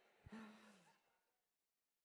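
Near silence, broken about a quarter second in by one faint, brief breathy voice sound, slightly falling in pitch, like a sigh.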